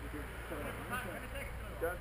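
Voices talking and calling out over a low, steady rumble.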